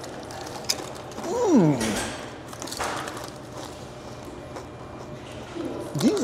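Crunching and chewing of pickle-flavoured potato chips close to a lapel microphone, with a sliding hummed "mmm" of enjoyment about a second and a half in.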